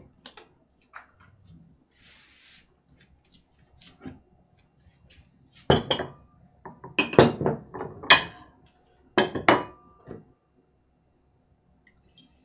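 Glazed stoneware dishes and bowls clinking and knocking against each other and the table as they are handled and set down. It is a few faint knocks at first, then several clusters of sharp clinks in the second half, some ringing briefly.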